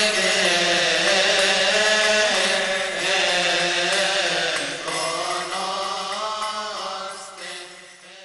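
Slow liturgical chant with long held, drawn-out notes, fading out near the end.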